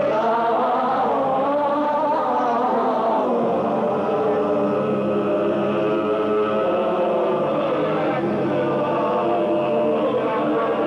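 Live music of chanting, choir-like layered voices, with a man's voice singing into a microphone.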